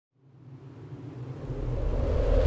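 A low rumbling sound effect swells steadily up from silence: the build-up of an animated intro.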